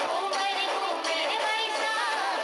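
A recorded Hindi song plays, with a singer's voice gliding through an ornamented melody over steady instrumental backing.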